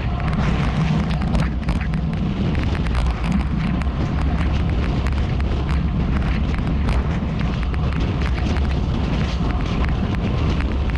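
Wind buffeting the microphone of a bike-mounted camera on a fast coasting descent at about 40 mph: a steady, heavy rushing noise with frequent crackles.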